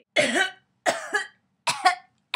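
A person coughing three times in quick succession, with short silences between the coughs.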